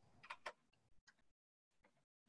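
Faint computer keyboard keystrokes: two soft clicks in the first half-second, then a few fainter ones.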